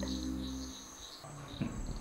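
Held low notes of background music stop about three quarters of a second in, leaving night ambience of crickets chirping.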